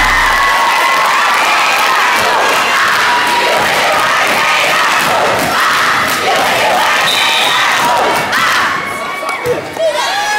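A loud crowd of high-school students in the bleachers cheering and shouting together. The noise drops off briefly near the end.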